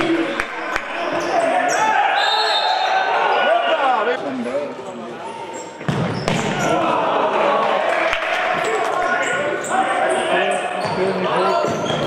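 Live sound of a futsal match in a reverberant sports hall: players and spectators shouting, sharp knocks of the ball being struck, and squeaks of shoes on the court floor.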